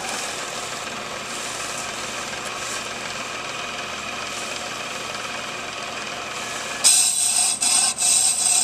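Ammco brake lathe running steadily with a brake drum spinning on its arbor. About seven seconds in, a much louder, high-pitched metallic scraping begins as the cutting bit meets the drum's inner lip.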